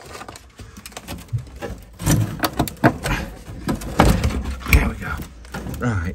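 A black-painted wooden box with a wire-mesh front being shifted and turned among clutter: a run of knocks, scrapes and clatter, loudest about four seconds in.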